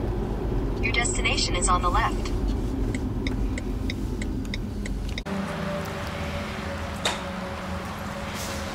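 Low road and tyre rumble inside a BMW i3's cabin as the electric car drives slowly into a charging station. About five seconds in it cuts to a quieter, steady background with a faint hum.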